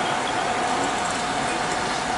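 Engine-driven fire pump running steadily under load with a constant whine, feeding water into charged hose lines.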